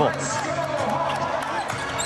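A basketball being dribbled on a hardwood court, with music playing underneath.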